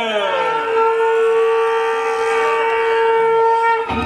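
A falling glide in pitch that settles into one long, steady horn-like tone. The tone is held for about three seconds and stops just before the end.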